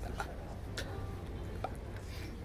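Three sharp, irregular clicks, roughly half a second to a second apart, over a steady low hum.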